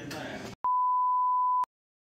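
A single steady 1 kHz test-tone beep lasting about a second: the bars-and-tone signal that goes with colour bars. It starts and stops abruptly after faint room noise, and dead silence follows it.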